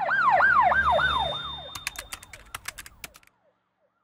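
Police siren sound effect in a fast yelp, rising and falling about four times a second and fading out with an echo. A quick run of sharp clicks comes as it dies away, about two seconds in, then it goes silent.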